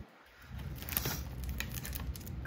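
Soft handling of a cardboard box of baseball card wax packs: light rustling with a few small clicks, after a brief near-quiet moment at the start.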